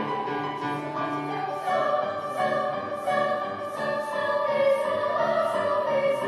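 School choir singing in parts with grand piano accompaniment, held notes over a quick, steady pulse of crisp consonants about twice a second.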